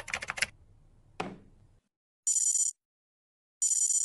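Fast typing on a backlit gaming keyboard that stops about half a second in, then a brief falling swish. After a short silence a high electronic ringing tone sounds in two short bursts about a second and a half apart.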